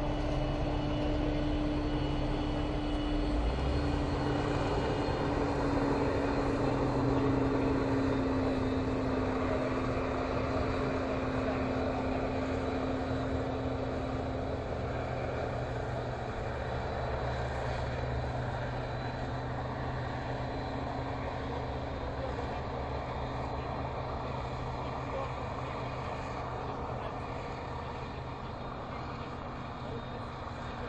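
Krone BiG X 650 self-propelled forage harvester running under load, chopping maize and blowing it through its spout into a trailer, with the towing tractor's engine running alongside. The combined machine noise is steady, swells slightly early on, then fades slowly as the machines move away.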